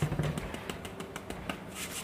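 Fine-mesh kitchen sieve being tapped and shaken by hand over a stainless steel bowl, sifting powdered sugar: a run of light, irregular taps with a soft rustle of sugar through the mesh.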